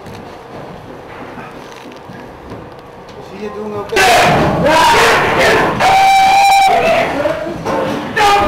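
Low, quiet voices and room noise, then from about halfway loud shouting, with long drawn-out cries, one held for about a second.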